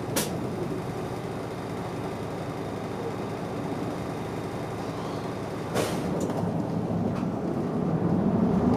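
A city bus's engine idling, heard from inside the cabin, with a short sharp hiss of air just after the start and a longer one about six seconds in, typical of the air brakes. After that the engine picks up as the bus pulls away.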